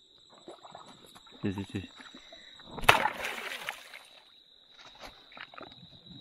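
A single sharp splash in shallow stream water among rocks about three seconds in, trailing off over about a second.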